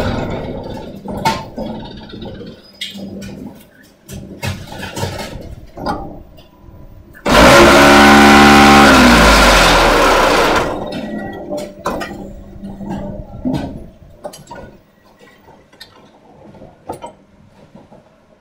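Automatic concrete block-making machine working through a cycle: clanks and knocks of its moving parts, then about a second past the halfway point a loud burst of the vibration table shaking the mould for about three seconds to compact the concrete. The vibration drops in pitch as it winds down and stops, and scattered knocks follow.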